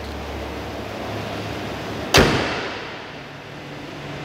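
The hood of a 2021 Chevrolet Silverado 2500 slammed shut about two seconds in: one sharp bang with a short ringing tail. Underneath is the steady idle of its 6.6-liter gas V8, more muffled once the hood is down.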